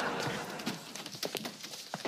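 The tail of a studio-audience laugh fading out, then footsteps knocking on a hard floor and a door being unlatched and pulled open.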